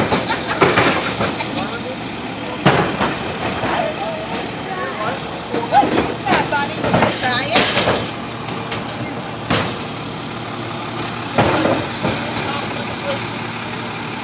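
A garbage truck's engine running steadily, under people talking and laughing, with a few sharp knocks.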